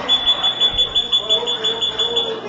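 Rapid, high-pitched electronic beeping, a pulsed tone repeating evenly, over faint voices in the room.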